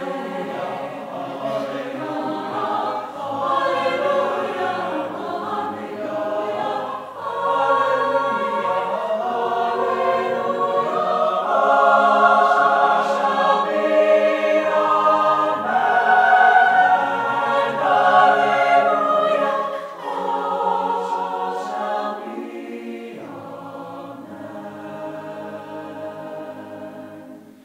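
Mixed-voice choir singing sustained chords, swelling louder through the middle and growing softer near the end.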